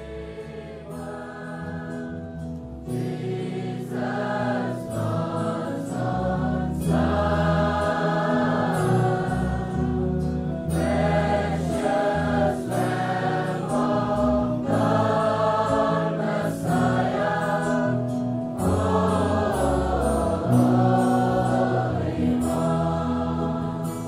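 A choir singing slow, held chords, growing louder over the first few seconds.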